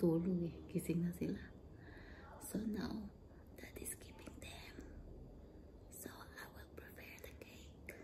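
A woman whispering, with short stretches of soft voiced speech in the first second and around three seconds in.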